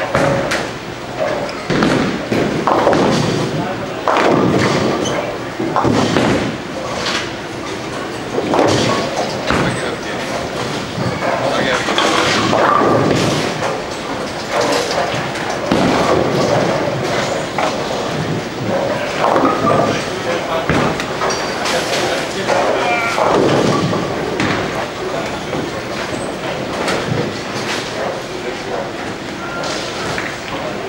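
Bowling alley din: indistinct chatter of voices with repeated thuds and crashes of balls hitting lanes and pins.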